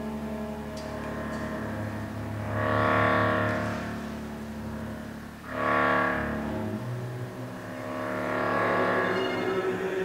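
Contemporary chamber-ensemble music: sustained low bowed tones from cello and double bass, with three louder chords that swell up and fade away about every three seconds.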